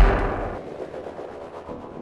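Intro sting of a TV logo bumper: a deep booming hit right at the start that rings out and fades away over the next two seconds.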